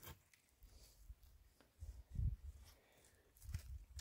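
Mostly quiet, with a few soft, low thuds, the clearest about two seconds in and a weaker one near the end.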